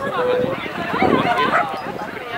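Dogs barking and yipping, mixed with people's voices.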